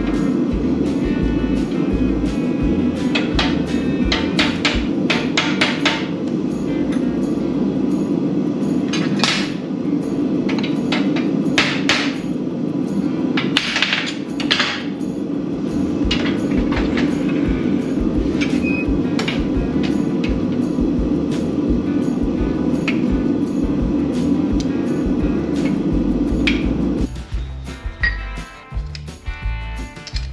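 Irregular metal clinks and knocks as hot tong jaws are bent and worked in a steel bench vise, over a steady low roar. The roar cuts off near the end.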